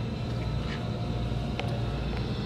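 Steady low background hum with a light hiss, broken by a couple of faint clicks.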